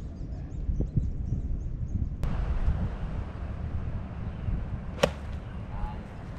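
Steady low wind rumble on the microphone, broken about five seconds in by one sharp crack of a golf club striking the ball.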